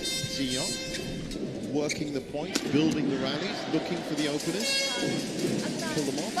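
Badminton rally on an indoor court: a few sharp racket hits on the shuttlecock and high squeaks of court shoes, under steady crowd voices and music.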